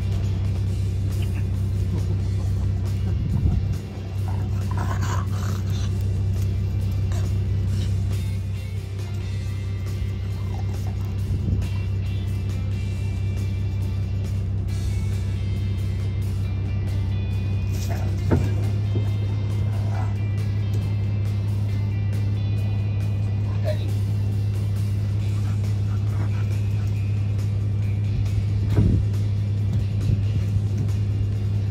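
Background music over a steady, unbroken low hum, with a few faint clicks.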